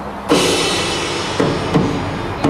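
High school marching band and front ensemble come in together about a third of a second in with a loud, sudden opening chord, then several sharp drum and percussion strikes under the held notes.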